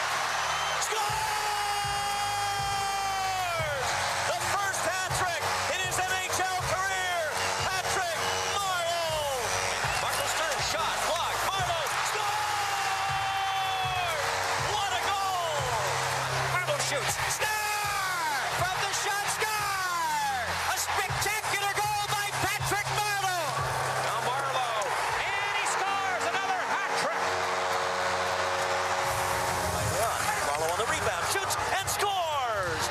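Music: a song with a voice sliding through falling notes over held chords and a low bass line.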